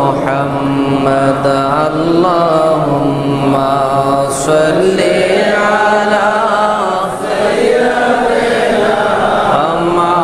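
Melodic chanting of durood, the blessings on the Prophet, by voice over a public-address microphone. It moves in a slow, unaccompanied melody with long, wavering held notes.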